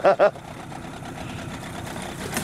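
Steady low mechanical hum of a small motor running.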